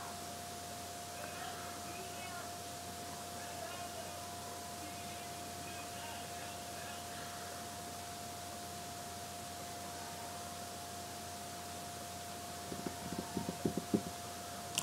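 Low steady hiss with a constant faint tone. Near the end comes a quick run of soft clicks from a computer mouse's scroll wheel as the page is scrolled.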